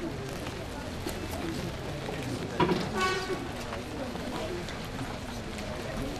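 Quiet talk and murmuring from a small group of people standing outdoors. There is a sharp knock about two and a half seconds in, then a brief raised voice.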